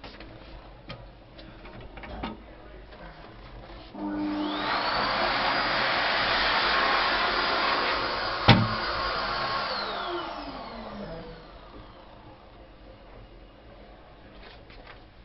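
An electric motor starts up with a rising whine and runs with a loud rushing noise for about six seconds, with one sharp click partway through, then winds down, its whine falling away.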